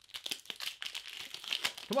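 A Pokémon card booster pack's foil wrapper crinkling and tearing as it is ripped open: a dense, crackly rustle lasting nearly two seconds.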